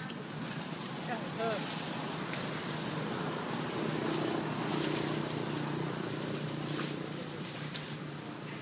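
Indistinct background voices over steady outdoor noise, with a short high squeak a little over a second in and a few brief rustles.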